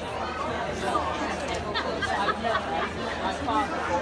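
Crowd chatter: many visitors talking at once, several overlapping voices.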